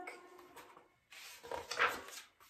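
A picture-book page being turned: a soft paper rustle and swish in the second half, after the fading end of a sung note.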